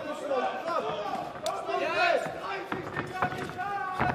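Voices shouting over the ring, with a couple of sharp thuds from punches and kicks landing, one about a second and a half in and another late on.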